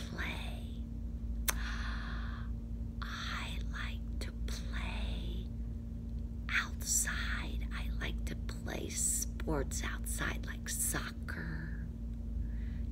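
A woman whispering, breathy speech without voice, in several short phrases over a steady low hum.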